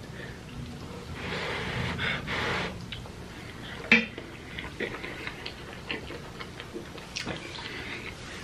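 A man chewing spicy noodles and blowing out breaths against the heat, with one sharp clink about four seconds in as a fork is set down in a stainless steel bowl.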